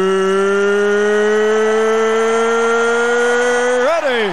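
A ring announcer's amplified voice drawing out the last syllable of "Are you ready?" into one long held note. Its pitch creeps slowly upward, then swoops up and slides down at the very end.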